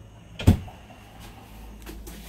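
A cabinet door knocking shut once, sharply, about half a second in, followed by a fainter click near the end.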